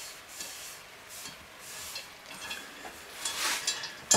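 A sponge rubbing seasoning paste over the inside of a warm cast-iron Dutch oven, in soft repeated wiping strokes that grow a little louder near the end.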